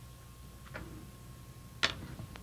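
Low background hum with a thin steady tone, broken by two brief clicks: a faint one under a second in and a sharper, louder one near the end.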